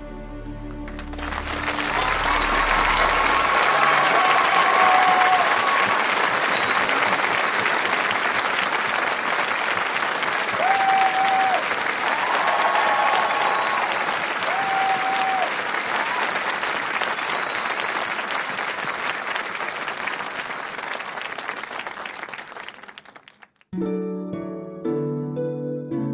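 Concert audience applauding, with a few short cheers over the clapping, after the last notes of a song; the applause dies away near the end.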